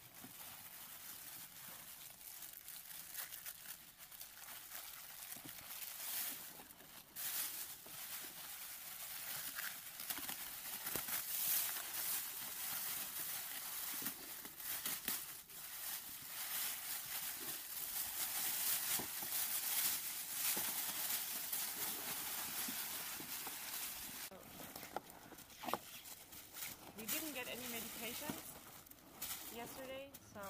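Foil rescue blanket crinkling and rustling continuously as it is wrapped and tucked around a casualty on a litter. Voices come in faintly near the end.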